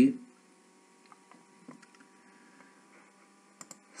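Faint steady electrical hum in a quiet room, with a few soft computer mouse clicks scattered through, two in quick succession near the end.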